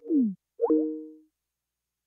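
Microsoft Teams call-ended notification sound: a quick falling tone, then a second chime of two held notes that fades out within about a second.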